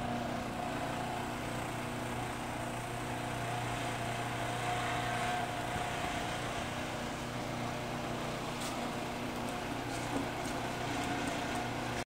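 Scorbot robotics conveyor running: its drive motor and plastic flat-top chain make a steady hum, with faint light ticks near the end.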